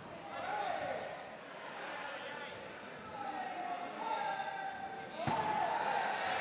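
Men shouting in long, rising and falling calls around a kickboxing ring, with one sharp impact about five seconds in, a strike or foot landing hard in the ring.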